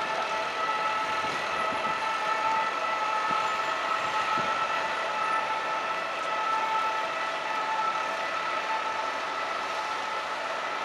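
Caterpillar 323D tracked excavator running as it works, its diesel engine and hydraulics giving a steady whine of several pitches that does not change, with a few faint knocks.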